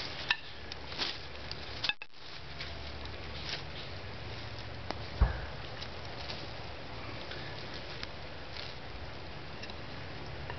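Scattered light clicks and knocks of dry wooden sticks being handled and laid across one another, with one louder knock about five seconds in.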